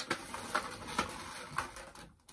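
Handling noise from a clear plastic box turned in the hands: a few light clicks, roughly half a second apart, over faint rustling.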